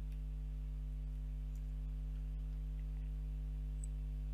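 Steady low electrical mains hum from the recording setup, with a few faint clicks.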